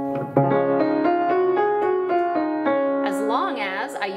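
Schultz upright piano playing a five-tone scale (do–re–mi–fa–sol) transposed to start on a black key. The notes step along about two to three a second over a held low note.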